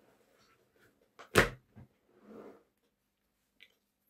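A few knocks from handling on a desk: a sharp knock about a second and a half in, much louder than the lighter knocks just before and after it, then a soft rustle.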